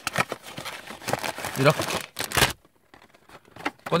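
Small cardboard model-kit box being torn open and a plastic bag of parts crinkling as it is pulled out: a run of crackly rustles and scrapes, with one louder rip a little past two seconds, then a short lull.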